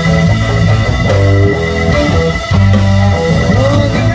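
Live rock band playing an instrumental passage, loud: electric guitar notes that bend and slide over low held bass notes.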